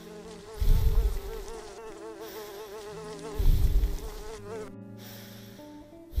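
Buzzing insect sound effect: a wavering, warbling drone that stops about three-quarters of the way through. Two loud, deep low rumbles come about a second in and again about three and a half seconds in, over soft background music.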